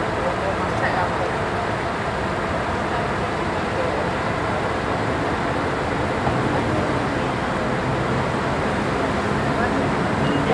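Scania L113CRL bus diesel engines idling at a standstill, a steady even running noise with a faint low hum that firms up about six seconds in. Voices are heard faintly behind it.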